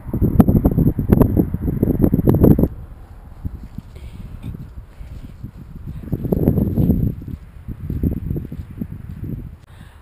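Wind gusting across an action camera's microphone, with rumbling and crackling handling noise. It is loud for the first two or three seconds, drops away, then surges again briefly a few seconds later.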